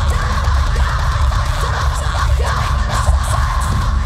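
A live band playing loud electronic music, with heavy, continuous bass and a steady low drone.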